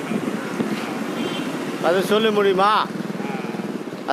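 Road traffic passing close by, a steady rumbling engine noise, with a man's voice speaking briefly about halfway through.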